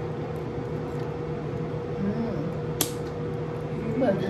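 Steady hum of a running fan with a faint constant tone, and one sharp click about three seconds in.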